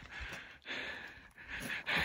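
A man breathing hard, about three heavy breaths in two seconds.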